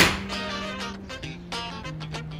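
A golf club strikes a ball once right at the start, a sharp crack that is the loudest sound here, over background music with a stepping bass line.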